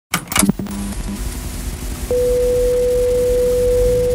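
Sound effect of an old television switching on: a brief crackle, then steady static hiss with a low hum, joined about two seconds in by a single steady test tone.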